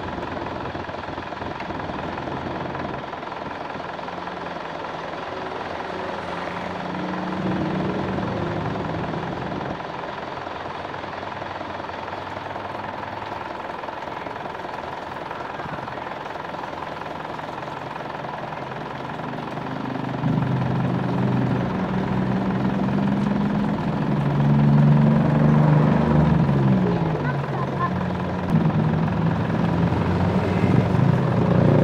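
Isuzu Panther engine running steadily while water from a garden hose runs through the radiator and splashes out of an open coolant hose during a radiator flush. It grows louder in the last third.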